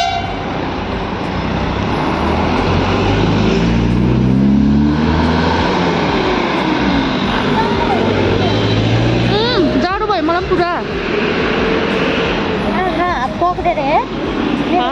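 Traffic noise heard from a moving scooter in a crowded street, with steady wind and road noise. A vehicle engine rises in pitch a few seconds in and again a few seconds later. Voices come through briefly around the middle and near the end.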